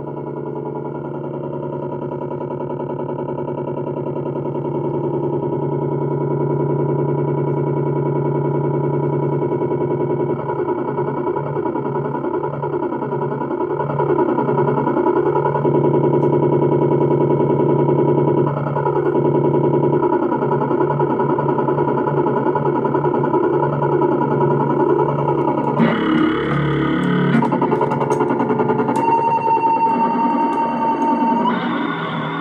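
Circuit-bent Casio SK-1 sampling keyboard sounding a sustained, layered electronic drone through a small Roland Cube amplifier. The drone grows louder over the first several seconds and then takes on a wavering, beating texture. Near the end it turns harsher and glitchier, with clicks and a high tone.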